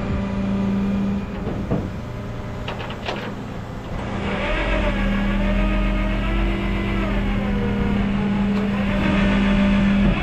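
Rollback tow truck's hydraulic winch running with the truck engine driving it, pulling the wheel-less pickup up the flatbed: a steady mechanical hum that stops about a second in, a few sharp clicks, then the hum resumes with a wavering pitch and cuts off suddenly at the end.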